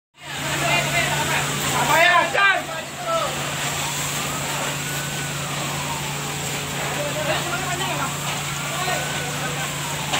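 Voices shouting in the first three seconds, then an emergency-vehicle siren wailing in slow rises and falls. Under both run a steady low engine hum and a constant hiss.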